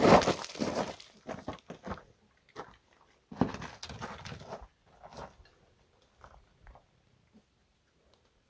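Footsteps crunching on loose rocky gravel. The crunching is loudest in the first second and again from about three and a half seconds in, then thins out to a few faint crunches.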